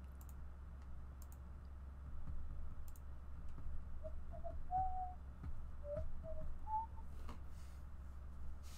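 A few soft whistled notes in the middle, stepping up and down in pitch, with scattered faint clicks over a steady low electrical hum.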